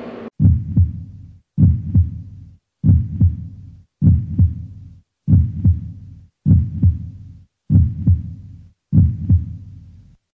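Heartbeat-style sound effect: a low double thump, lub-dub, repeating about every 1.2 seconds, eight times, with short silences between beats.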